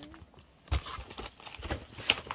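Handling noise: a few soft knocks as craft things are moved about on a padded surface, the loudest a low thump about three quarters of a second in and another shortly before the end.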